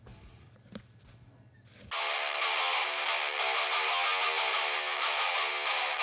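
A short quiet stretch with a faint click, then about two seconds in a distorted electric guitar comes in suddenly and sustains steadily, thin in the low bass.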